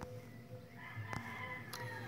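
A faint, drawn-out bird call in the background, starting about a second in and held about a second, over a low steady hum and a couple of small clicks.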